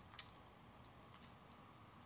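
Near silence, with a couple of faint clicks and rustles of stiff New Zealand flax (harakeke) strips being handled and tucked in weaving.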